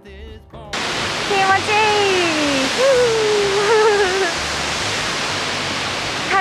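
Loud, steady rush of water from a waterfall and the river below it, starting suddenly under a second in as background music cuts off. A woman's voice is heard briefly over the water.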